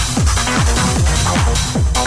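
Techno from a mid-1990s DJ mix: a steady four-on-the-floor kick drum, a little over two beats a second, under dense synth and percussion layers.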